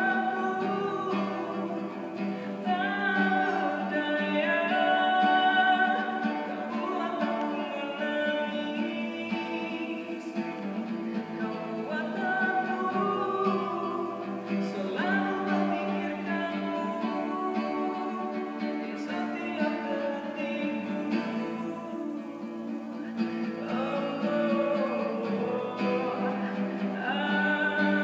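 A man singing in Indonesian to his own strummed classical guitar accompaniment.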